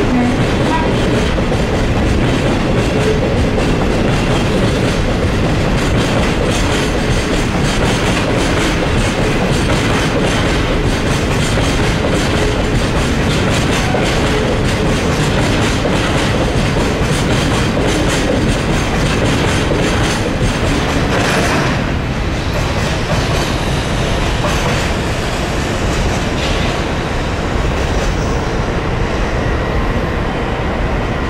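Freight train of white covered cement hopper wagons rolling past, the wheels running over the rails in a steady loud rumble and clatter. It eases a little over the last several seconds as the tail of the train goes by.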